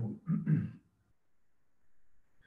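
A man's voice making a brief throat-clearing or hesitation sound within the first second, then a pause.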